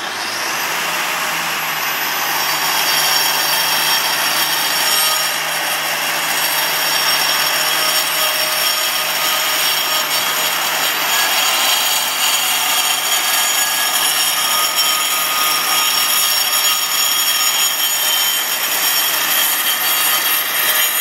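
Protool DCC AGP 125 vacuum-shrouded grinder cutting a non-slip groove into a polished concrete step along a guide rail: a loud, steady grinding with a thin high whine, building over the first couple of seconds as the disc bites in, then holding steady.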